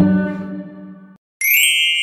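Background music dies away in the first second. After a brief gap, a bright electronic ding sounds about a second and a half in and slowly rings down: an editing sound effect laid over a transition graphic.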